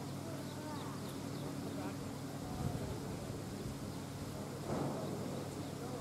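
Steady low hum under faint, distant talk, with a brief louder sound about five seconds in.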